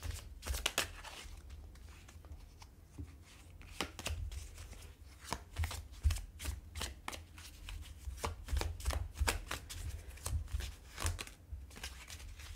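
A tarot deck being shuffled by hand, the cards giving a string of irregular short clicks and slaps.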